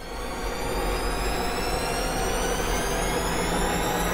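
A steady rushing drone with a low rumble under it and a thin whine that rises slowly in pitch: a dramatic riser sound effect laid over the reaction shots.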